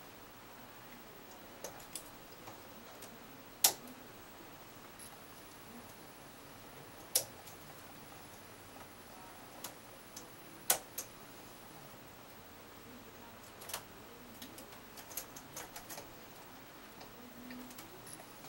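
Small metallic clicks of hand transfer tools and latch needles on a bulky double-bed knitting machine as cable stitches are moved by hand. Three louder clicks come at even intervals about three and a half seconds apart, with fainter ticks between them and a quick run of small ticks near the end.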